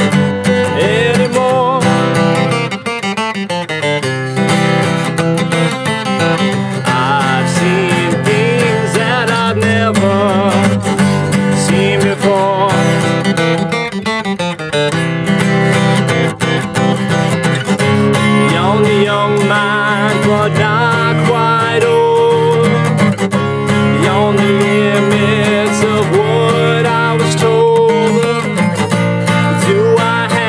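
Steel-string acoustic guitar played solo in an instrumental break, with steady chords ringing throughout.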